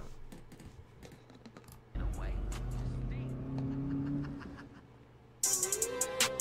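Music video playing back: a car engine revving with a deep rumble comes in suddenly about two seconds in and fades, then a hard rap beat starts abruptly near the end.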